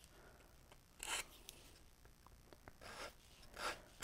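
Faint, short strokes of an emery board rasping down along the edge of paper glued onto a wooden cutout, about three strokes a second or so apart. Each stroke wears the overhanging paper off to leave a clean edge.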